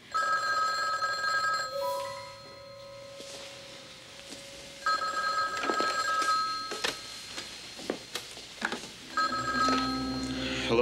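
Desk telephone's electronic ringer ringing three times, each ring just under two seconds with a pause of about three seconds between rings: an incoming call. A few sharp clicks come between the second and third rings.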